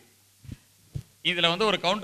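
Two soft, low thuds about half a second apart, typical of a handheld microphone being knocked while it is held, over a steady low electrical hum. A man's voice then resumes through the microphone.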